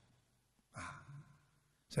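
A man's short breath close to a microphone, about two-thirds of a second into a pause, with a fainter second breath sound just after and otherwise near silence.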